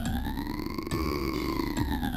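Electronic music: a synthesizer tone with a few overtones glides slowly up in pitch and falls back again, over a heavy low bass.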